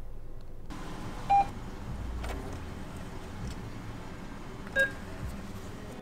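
Low steady rumble of a car's cabin, with two short electronic beeps of different pitch about three and a half seconds apart. The beeps are the loudest sounds. A wider hiss of outside noise comes up just before the first beep.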